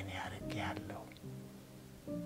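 A man speaking in Amharic for a moment, then a pause filled by soft background music with held notes.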